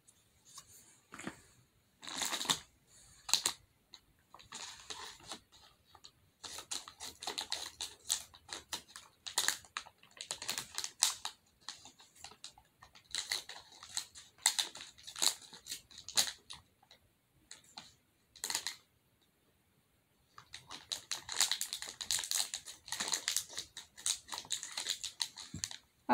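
Fidget toys and their plastic packaging being handled: quiet, irregular clicks and taps, growing denser near the end.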